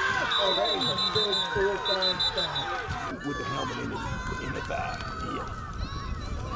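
Spectators shouting and cheering, many voices overlapping. Near the start a high whistle sounds in two short trilling blasts, typical of a referee's whistle ending a play after a tackle.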